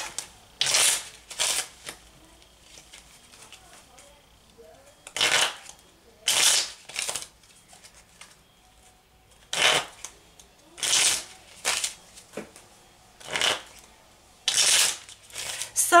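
A deck of tarot cards being shuffled by hand: about ten short, crisp bursts of shuffling noise, coming every second or two with quiet gaps between them.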